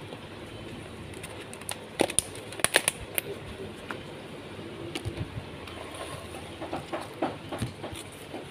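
Clear plastic food containers and lids handled on a counter: a cluster of sharp plastic clicks and knocks about two to three seconds in, and lighter scattered clicks in the second half, over a steady background hiss.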